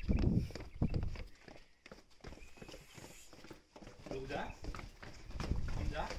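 Footsteps going down stone stairs: irregular taps and shoe scuffs on the steps.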